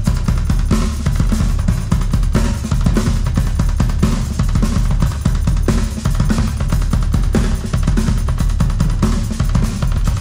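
Heavy fuzz-rock music led by a drum kit, with bass drum and snare hits over a thick, distorted low end.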